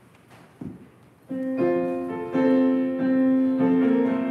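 A single thump, then about a second in a keyboard instrument begins playing sustained chords, the opening of the choir's call to worship.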